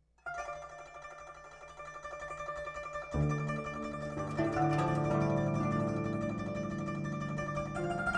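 Solo guzheng (Chinese plucked zither) playing, its strings plucked with finger picks and left ringing. The notes begin softly a moment in, a deep bass note enters about three seconds in, and the playing grows louder.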